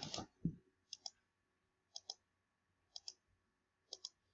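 Computer mouse button clicked four times, about once a second, each click a short press-and-release pair, while the giveaway rounds are advanced one by one.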